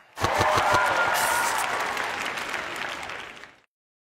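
Studio audience applauding, which cuts off about three and a half seconds in.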